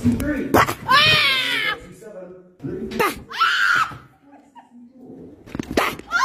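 A person screaming in fright, two long shrill screams, one about a second in and one about three seconds in, with sharp knocks at the start and just before the end.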